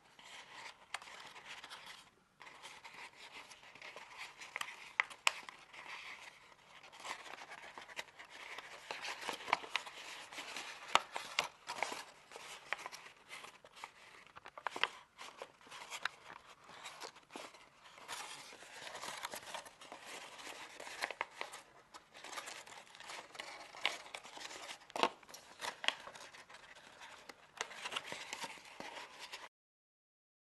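A large, pre-creased sheet of origami paper being folded by hand, rustling and crinkling continuously with many sharp crackles as the creases are pushed and pinched together. It cuts off abruptly near the end.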